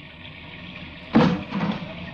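Radio-drama sound effects: a steady storm-noise bed, with a sudden knock or clatter about a second in and a smaller one just after.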